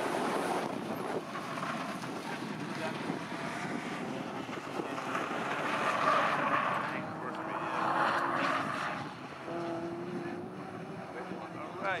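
BMW cup race cars running at speed around the circuit, their engines rising in two louder swells about six and eight seconds in, with wind noise on the microphone throughout.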